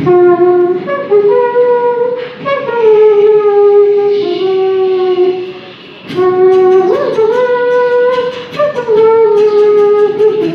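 Beatboxers vocalising into microphones: a horn-like hummed melody in long held notes that step up and down in pitch, with short percussive beatbox clicks coming in more densely about six seconds in.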